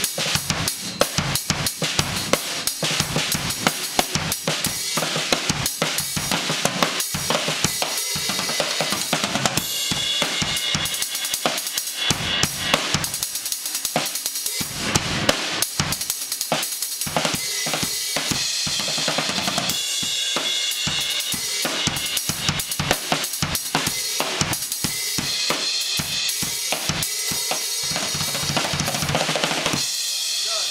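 A drum kit solo played fast and without a break: dense bass drum and snare strokes under ringing cymbals.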